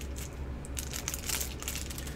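Plastic wrapper of a Cherry Ripe chocolate bar crinkling on and off as it is peeled open by hand.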